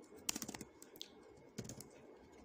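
Faint computer keyboard typing: a quick run of keystrokes a quarter second in, a single keystroke near the middle, and another short run near the end.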